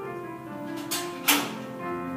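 Piano music playing in slow sustained notes, with two sharp knocks about a second in, the second one louder.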